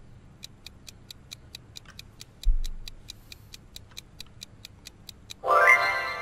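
Ticking sound effect of a quiz countdown timer, about four to five ticks a second, with one low thump about halfway through. Near the end a louder tone rises in pitch and holds as the answer is revealed.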